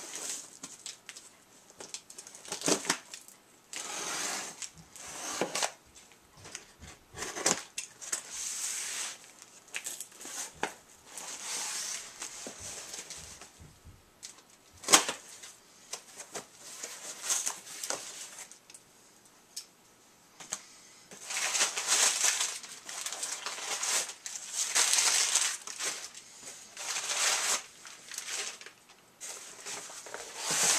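A cardboard shipping box being torn and cut open by hand, with repeated ripping and rustling of cardboard and packing in irregular bursts and one sharp click about halfway through.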